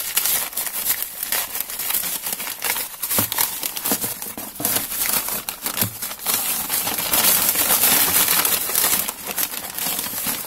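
Glossy printed flyer paper being unwrapped and crumpled by hand, a continuous irregular crinkling and rustling that is loudest in a sustained stretch about seven to nine seconds in.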